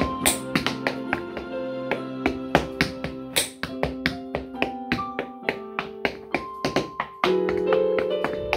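Hard-soled dance shoes striking a wooden board in quick, irregular footwork, several clicks a second, over sustained piano music.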